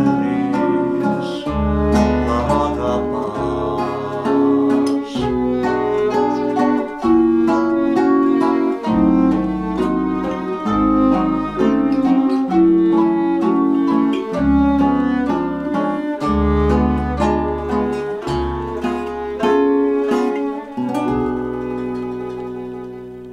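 Small acoustic ensemble playing an instrumental passage: a nylon-string classical guitar and a plucked double bass carry it, with a bowed violin and a vibraphone. Low bass notes change every second or two, and the music grows quieter near the end.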